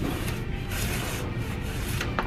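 Flattened cardboard moving boxes rubbing and scraping against each other as they are pulled from a stack.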